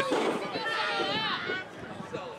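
Spectators' voices around a wrestling ring, with one raised voice calling out for about a second near the start, then scattered chatter.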